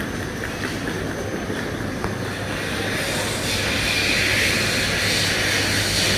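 Steady low hum of an airport terminal, with a hissing rush starting about three seconds in, typical of a drinking-water refill station running water into a bottle.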